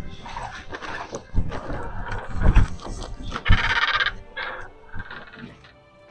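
Several dull thumps and a stretch of rustling and scraping as people come in through a door carrying bags, over soft background music.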